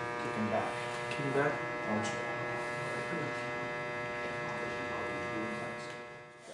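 A steady electrical buzz, a mains hum with many overtones, with faint indistinct voices beneath it.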